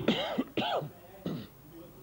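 A man clearing his throat three times in quick succession, the first two loudest and the third shorter.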